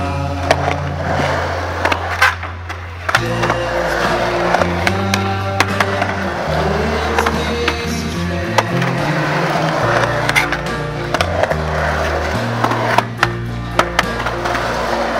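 Skateboard wheels rolling on concrete, with several sharp clacks of the board hitting the ramp and ground, under background music with a steady bass line.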